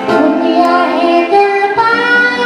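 A man singing into a microphone while playing an acoustic guitar, holding sung notes that step up in pitch twice toward the end.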